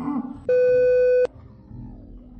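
A censor bleep: one steady electronic tone, under a second long, starting about half a second in and covering a swear word. A brief shout of a man's voice comes just before it.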